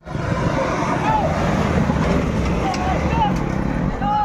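An off-road jeep's engine running hard as it drives along a dirt track, a dense steady rumble, with spectators shouting over it.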